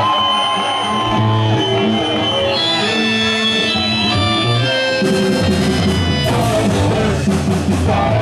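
Garage punk band playing live: electric guitar, bass and held organ chords, with the drums and cymbals coming in harder about five seconds in.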